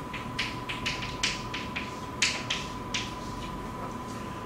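Chalk tapping and scratching on a blackboard as an equation is written: a quick, irregular run of sharp taps and short scrapes, over a thin steady tone.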